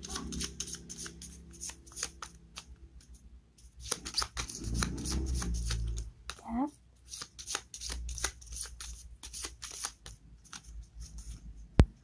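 A deck of tarot cards being shuffled by hand: a rapid, uneven run of soft card clicks and flicks as the cards are slid and riffled, with one sharp snap just before the end.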